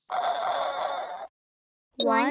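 A pig grunting sound effect, one rough grunt about a second long.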